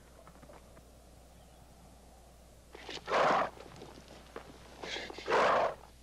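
Two loud, harsh rushes of breath, each well under a second long and about two seconds apart, like heavy frightened gasping.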